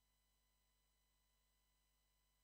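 Near silence: only a very faint steady electrical hum and noise floor.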